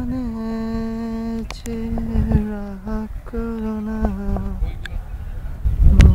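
A voice humming a slow tune in long held notes that step between a few pitches, over a low rumble.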